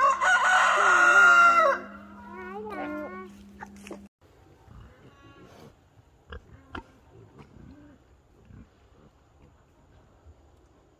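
Chickens and turkeys calling: a loud call lasting nearly two seconds, followed by shorter rising and falling calls. After about four seconds this gives way to quieter pig grunts and soft sounds of pigs rooting.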